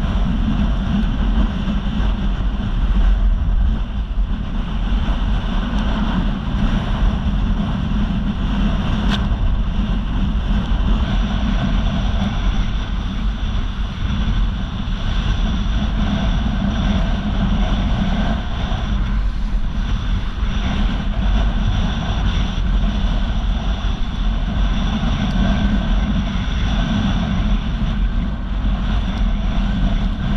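Wind buffeting an action-camera microphone with water rushing and slapping under a kiteboard as it planes over choppy sea, a loud, steady rumble and hiss.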